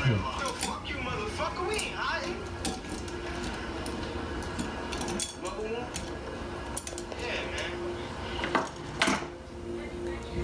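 Metal lever corkscrew being worked into and drawing the cork of a wine bottle: a run of small metallic clicks and scrapes, with a couple of louder clicks near the end as the cork comes free.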